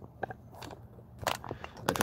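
Handling noise from a handheld camera being moved and set down: a few scattered clicks and knocks, the loudest near the end.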